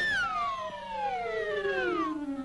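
Cartoon falling sound effect: one long descending whistle that starts suddenly and glides smoothly down in pitch for about two seconds, marking a character's drop from a height.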